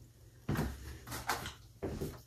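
Rustling and handling noise from hands and wig hair moving close to the microphone: one burst lasting about a second, starting half a second in, and a shorter one near the end.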